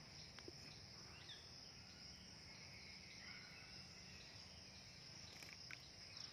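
Faint, steady, high-pitched insect chorus. A couple of faint chirps and a few light clicks near the end.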